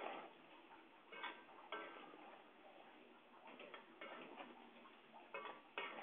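Faint, irregular clinks and ticks, short sharp knocks that ring briefly, coming every second or so over a low background hiss.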